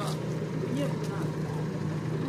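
Pickup truck engine idling with a steady low hum, with faint voices in the background.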